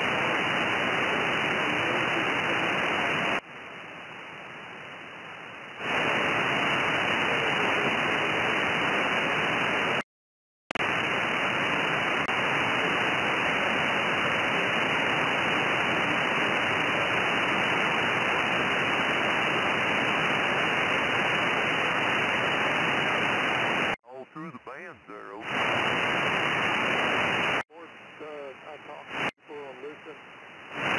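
ANAN 8000DLE software-defined radio receiving in upper sideband on the 20 m amateur band: a steady hiss of band noise, cut off sharply above about 3 kHz by the receive filter. The hiss drops out completely for half a second about ten seconds in. Near the end, as the set is retuned, the noise falls away in places and brief snatches of a voice come through.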